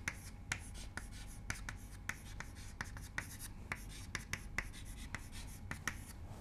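Chalk writing on a blackboard: a faint, irregular run of short scratches and taps as letters are written out.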